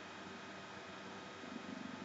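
Faint steady hiss of an old film soundtrack, with a low, rapidly fluttering rumble coming in about one and a half seconds in.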